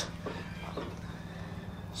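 Faint workshop room noise with a steady low hum and no distinct event.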